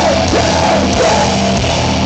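A live horror-punk rock band playing loud, with electric guitars and drums, heard from within the crowd.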